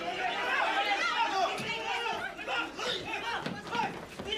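Several people talking over one another in a scuffle, a jumble of overlapping voices.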